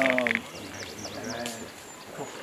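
Men's voices talking low. A bird chirps a run of short, high, falling notes in the middle.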